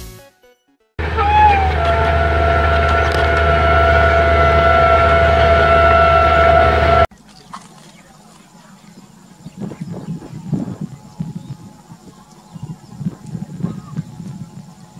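A locomotive horn sounds one long blast, starting about a second in. Its pitch dips slightly at the start and then holds steady over the low rumble of the train. It cuts off abruptly about seven seconds in, leaving quieter, uneven trackside sound with faint voices.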